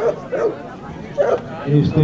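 A dog barking in short barks, with people talking.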